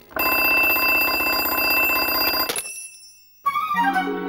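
Twin-bell mechanical alarm clock ringing loudly in a fast, rattling peal for about two and a half seconds, then cut off abruptly with a click. After a brief silence, music comes back in with a short rising run near the end.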